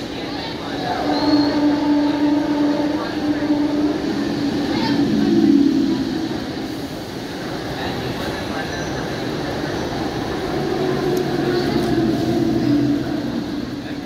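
Electric multiple-unit local train running past at speed: a continuous rumble of coaches and wheels on the rails with a steady hum through it. The noise falls away near the end as the last coach clears.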